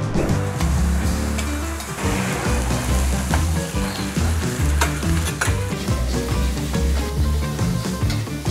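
Food sizzling and frying on hot cast-iron pans and in a wok, stirred with a metal spatula, with a few sharp clicks along the way. Background music with a steady, stepping bass line plays underneath.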